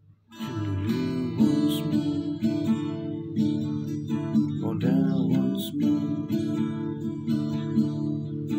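Acoustic guitar playing an instrumental passage, with chords and repeated plucked notes. It comes in about a third of a second in after a brief near-silent gap, then keeps a steady rhythm.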